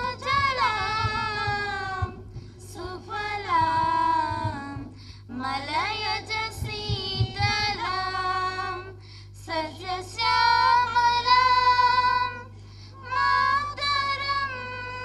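Two girls singing together into a microphone through a PA, a slow song in long held phrases with short breaks between them. A steady low hum runs underneath.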